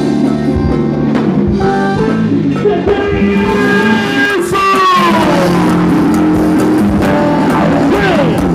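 Live band playing loud amplified music with electric guitar and drum kit, with a falling pitch glide about halfway through.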